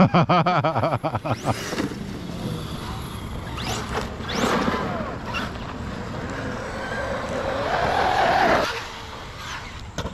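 Large-scale electric RC truck's brushless motor whining under throttle, its pitch rising and falling as it speeds over the dirt track. It ends in a steadier rising whine that cuts off suddenly near the end.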